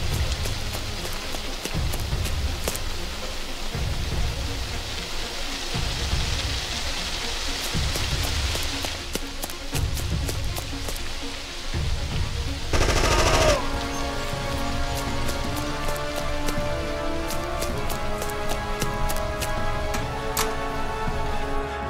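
Gunshot sound effects, scattered single shots and rapid bursts, over action music with a low beat about every two seconds. About 13 seconds in comes a short dense burst with a falling tone, and a melody comes in after it.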